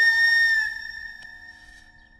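Background film score ending on one long held high flute-like note, which fades away over the second half.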